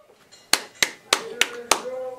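Five sharp hand claps in a steady rhythm, about three a second, starting about half a second in.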